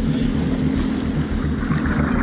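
Personal watercraft (jet ski) engine running steadily at low speed, a continuous low rumble mixed with water and wind noise.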